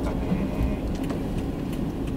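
Steady low engine and tyre rumble heard from inside a moving car's cabin, with a few faint ticks in the second half.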